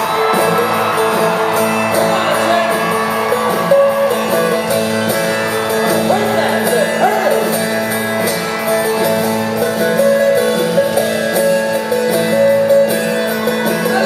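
Rock band playing live in a concert hall, acoustic guitars strumming sustained chords, heard from the audience.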